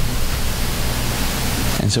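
Steady, loud hiss across the whole range with a low hum beneath it: the noise floor of the sound system or recording. A man's voice comes back in near the end.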